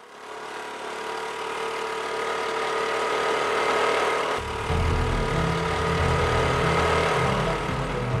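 A small TVS Scooty scooter engine running as the scooter pulls away, building in level over the first few seconds. A deeper, uneven rumble joins in from about four seconds in.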